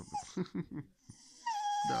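Cocker Spaniel whining or 'singing': a few short low vocal sounds, then about one and a half seconds in a long high whine that falls slightly in pitch.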